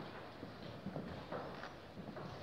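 A few light knocks of wooden chess pieces set down on boards, over faint room noise.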